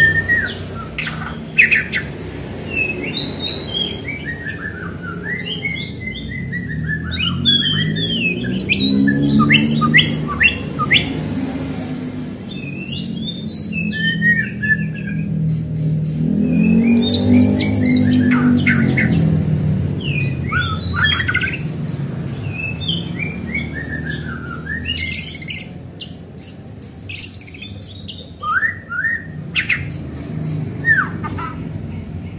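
White-rumped shama singing a long run of varied whistled phrases, rising and falling notes mixed with short sharp calls. Through the middle a low drone swells and fades beneath the song.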